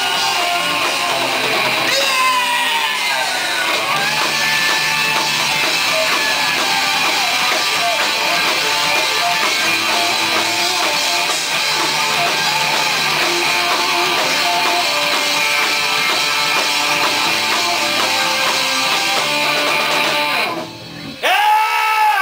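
Live rock band playing electric guitars, bass guitar and drum kit at a steady loud level. The song stops abruptly about twenty seconds in, and a loud voice comes in near the end.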